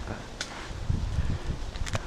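Footsteps scuffing through dry fallen leaves as people climb a steep woodland slope, with irregular low thumps on the microphone. Two brief sharp high sounds come about half a second in and again near the end.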